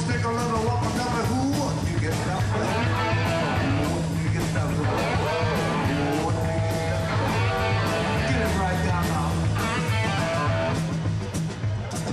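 Rock band playing: a lead line with bending notes over a steady bass and drum beat.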